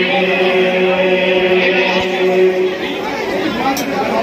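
Devotional chanting with a long held note, over the chatter of a dense crowd; the held note fades away about three seconds in, leaving mostly crowd voices.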